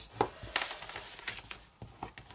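Scored cardstock being folded and burnished with a bone folder: a couple of light clicks, then faint rubbing of the folder along the crease.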